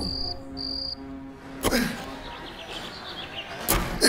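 Crickets chirping in two short high trills in the first second, over a held background-music chord that ends about a second and a half in. Two sharp hits follow, one just under two seconds in and one near the end.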